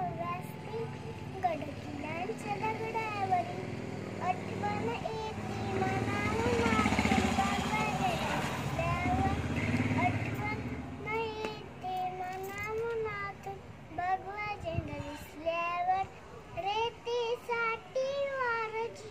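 A young girl singing alone without accompaniment, her voice wavering up and down in a tune. A motor vehicle passes in the middle, its noise swelling and fading under the singing.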